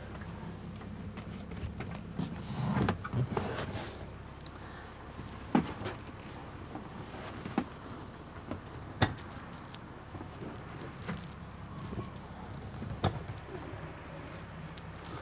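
A swivel captain's chair being turned and adjusted by hand: scattered sharp clicks and knocks from its swivel and lever, with some rustling, over a steady low hum.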